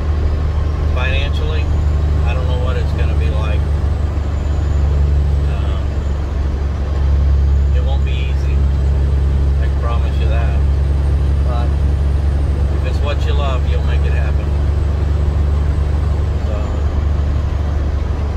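Steady low drone of a semi-truck's diesel engine and road noise inside the cab while driving, a little louder from about seven seconds in.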